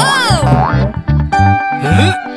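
Children's cartoon background music with a steady, repeating bass beat. Right at the start, a cartoon sound effect swoops up and back down in pitch for about half a second.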